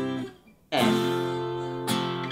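Twelve-string guitar played slowly in open strummed chords. A C major chord rings and dies away. A fresh chord is strummed a little under a second in and rings on, with another strum near the end.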